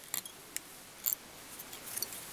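Small fly-tying scissors snipping: three short, sharp clicks about half a second apart, as the tying waste is trimmed at the fly's head.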